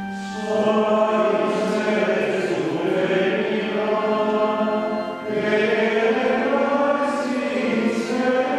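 A group of voices singing Latin Ambrosian chant in a reverberant church, entering about half a second in as a held organ chord ends. There is a brief pause for breath about five seconds in, then the singing goes on.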